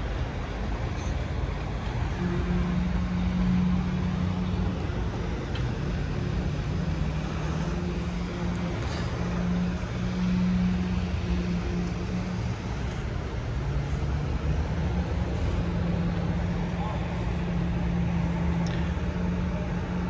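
Engines running steadily amid road traffic: a continuous low drone that wavers slightly in pitch over a bed of traffic noise.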